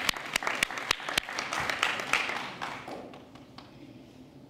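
Audience applauding, many hands clapping, fading out about three seconds in.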